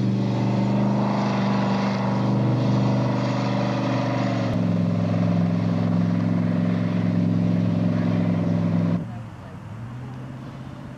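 Buick V8 engine of the McLean monowheel running at a steady speed, its pitch stepping down slightly about halfway through. Its level drops suddenly about nine seconds in.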